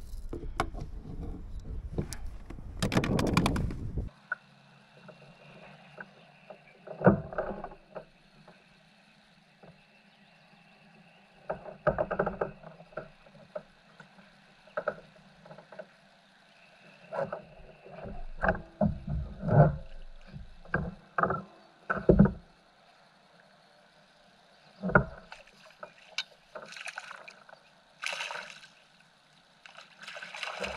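Kayak paddle strokes through the water for the first four seconds, then a quiet stretch with scattered short knocks and clicks of fishing gear being handled on the kayak.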